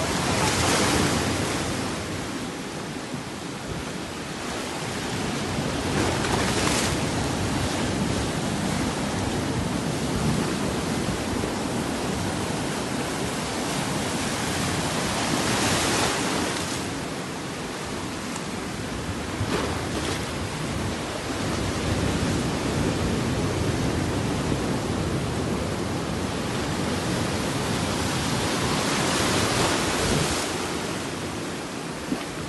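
Ocean surf breaking against a rocky shore: a continuous rushing wash that swells louder several times as waves come in.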